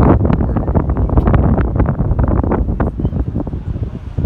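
Wind buffeting the microphone, a loud, steady rumble.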